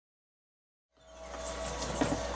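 Dead silence for about the first second, then faint room tone with a steady low hum fades in and grows louder.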